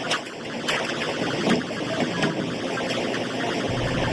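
Busy commercial kitchen noise: a dense clatter of metal pans and utensils being handled at a stainless-steel serving line.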